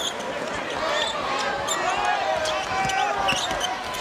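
Live basketball court sound: a ball being dribbled on a hardwood floor, with short sneaker squeaks and steady arena crowd noise underneath.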